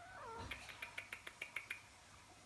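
Maine Coon kitten giving a wavering, whiny cry while play-fighting, followed about half a second in by a quick run of about ten short clicks.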